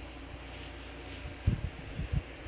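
Quiet room tone with a few soft low thumps about one and a half seconds in and again near the end: handling noise from a handheld camera being moved over the cloth.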